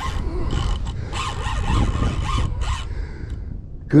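Spinning reel and drag working against a hooked catfish: rough rasping bursts about one to three seconds in, over a steady low rumble of rod handling close to the microphone.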